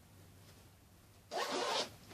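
Front zipper of a child's winter jacket pulled open in one quick stroke of about half a second, near the end.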